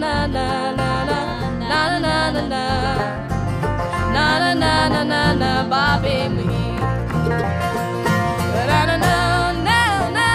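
Live bluegrass band playing: banjo, acoustic guitars, mandolin and upright bass, with a melody line bending over a steady bass pulse.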